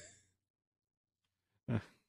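Near silence in a pause between speakers, then a man's short 'uh' near the end.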